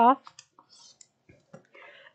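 The end of a spoken word, then a few faint, light clicks and taps from a plastic quilting ruler and small tools being handled on a cutting mat, with a brief soft rustle near the end.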